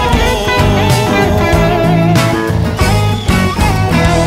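Live band playing an instrumental break: an electric guitar carries a wavering lead melody over bass, keyboards and drum kit.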